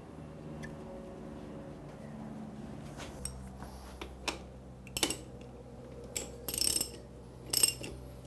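Ratchet wrench clicking in short, irregular bursts from about three seconds in, as the filler plug on a motorcycle's bevel final drive is screwed home and tightened.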